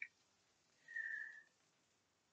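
A single faint, steady, high whistle-like tone lasting just under a second, about a second in.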